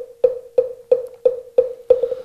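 Moktak, the Buddhist wooden fish, struck steadily about three times a second, each stroke a hollow wooden knock with a short ring. These are the strokes that lead into chanting a mantra.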